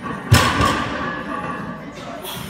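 Weight plates of a heavily loaded deadlift barbell coming down onto wooden blocks with one heavy thud about a third of a second in, followed by a short ringing rattle of the plates.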